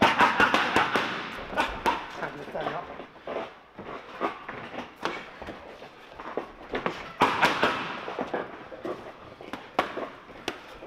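Boxing gloves smacking against a trainer's focus pads in quick flurries of punches, sharp slaps several per second, with the densest combinations near the start and about seven seconds in and single strikes between.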